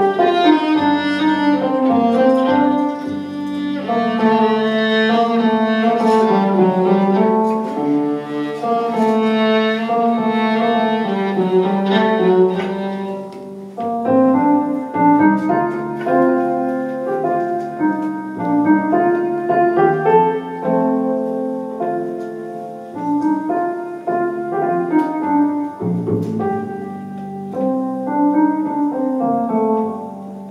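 Live instrumental duet of digital piano and violin: sustained bowed violin lines over piano chords, with a short pause and a fresh entry about halfway through.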